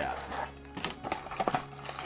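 A small cardboard accessory box being opened and handled: a few light clicks and rustles as the lid comes off. Soft background music with held tones plays underneath.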